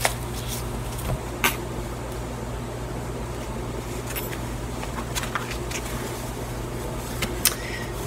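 Tarot cards being handled as the deck is cut: a few light sharp clicks, about one and a half seconds in and twice more near the end, over a steady low room hum.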